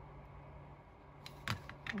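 Faint steady hum, then about a second and a half in a few short, sharp clicks and knocks as a plastic ink pad case is picked up and handled on the work table.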